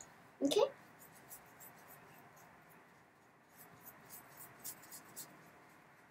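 Fine paintbrushes stroking paint onto a statue: faint, soft, scratchy brushing with scattered light ticks.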